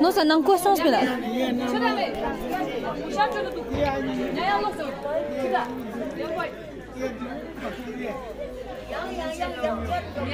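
People talking, several voices overlapping in conversation.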